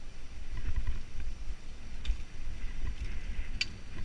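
Hardtail mountain bike rolling fast down a dirt forest trail: an uneven low rumble from the tyres and bumps, with a few sharp rattling clicks from the bike, the loudest about three and a half seconds in.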